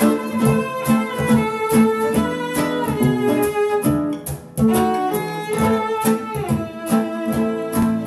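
Instrumental passage: a bowed cello playing sustained notes over an acoustic guitar, with a regular rhythmic pulse and a short break about halfway through.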